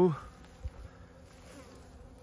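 Faint buzzing of honey bees flying around emptied honey extraction buckets and supers, collecting the leftover honey.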